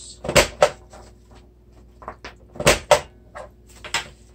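Corner-rounder punch on a Fiskars Boxmaker snapping through paper as the corners of an envelope blank are rounded: sharp clicks, the loudest in two pairs, one near the start and one a little before three seconds, with fainter clicks and paper handling between.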